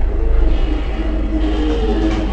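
Loud live band music with a heavy, muddy bass and the treble cut away.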